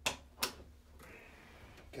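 Two sharp clicks about half a second apart from the valves and fittings at the base of a flexible-wall permeameter cell being handled.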